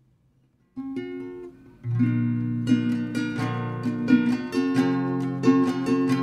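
Acoustic guitar strumming chords. A first chord sounds about a second in, and from about two seconds in it settles into steady, regular strums.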